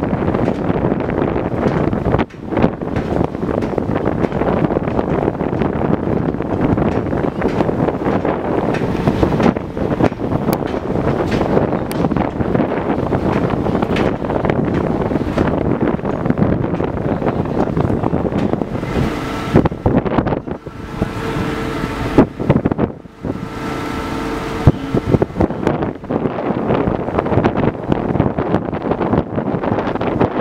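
Wind rushing over the microphone on a moving ferry's open deck, with the low rumble of the ship underneath. A faint steady hum comes in for a few seconds past the middle.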